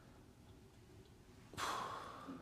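Faint room tone, then about one and a half seconds in a man lets out a long breathy sigh, an unvoiced exhale.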